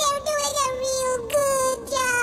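A high-pitched voice singing long held notes, each sliding slightly down in pitch: a short note, then two longer ones.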